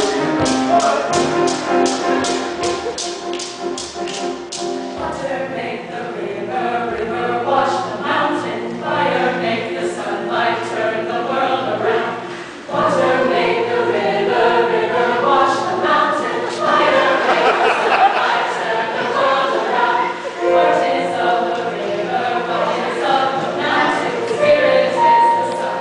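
Mixed choir singing, with a steady percussive beat of about three strokes a second during the first few seconds. The beat then stops and the singing carries on, with a brief break about halfway through.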